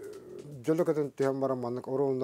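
A man's voice speaking with drawn-out, sing-song syllables, a low murmur first and then held, steady-pitched sounds broken by short pauses.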